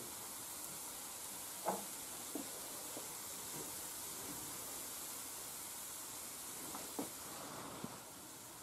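Faint steady sizzle of a thin crepe cooking in a nonstick frying pan, with a few soft knocks.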